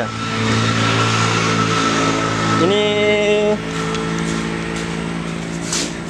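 A steady low motor hum with even overtones, like an engine running nearby, with a thin steady whine over it that stops about halfway through.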